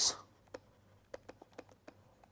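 Stylus writing on a digital pen tablet: a handful of faint, light ticks and taps, about six in all, spread through the pause.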